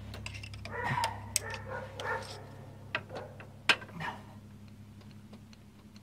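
Screwdriver clicking and scraping on the metal fuel-line fitting of a Holley four-barrel carburetor as the line is loosened: a handful of sharp clicks, with a steady low hum underneath.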